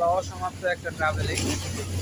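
A man talking over a steady low rumble of sea waves washing onto a concrete embankment, with a wave's hiss swelling about one and a half seconds in.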